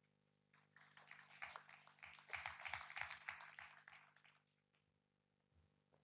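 Faint audience applause of many quick claps. It starts about half a second in, is fullest around the middle and dies away by about four and a half seconds.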